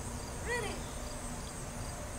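Faint, steady, high-pitched insect song.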